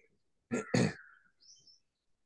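A man's short laugh, a quick voiced chuckle of two pulses about half a second in, followed by a faint high chirp.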